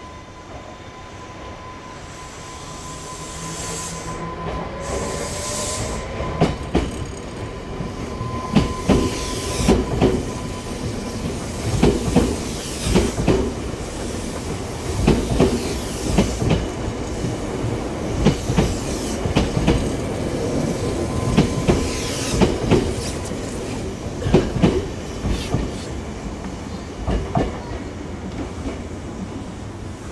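A Semboku Rapid Railway 7000 series electric train accelerates away and passes close by. Its motors give a rising whine, then the wheels clack over the rail joints in pairs, car after car, with some wheel squeal. The clacks thin out near the end.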